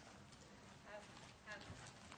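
Faint hoofbeats of a barrel-racing gelding moving over indoor arena dirt, as scattered soft clicks. Two brief high-pitched voice sounds come about a second in and again half a second later.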